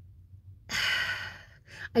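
A woman's audible sigh, a breathy exhale lasting just over half a second, followed by a short breath in just before she speaks again.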